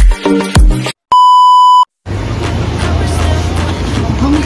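Electronic dance beat with deep kick drums that cuts off about a second in, followed by one steady electronic beep lasting under a second. After a brief silence comes a steady low rumble of outdoor background noise.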